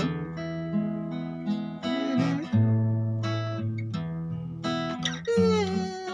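Steel-string acoustic guitar picked through a chord progression in F-sharp minor, D and E, with plucked notes and chords ringing into each other and a new note or chord about every half second to a second.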